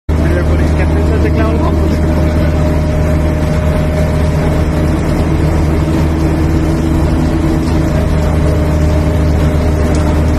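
Fishing trawler's engine or deck machinery running with a steady, loud low drone and a steady tone above it.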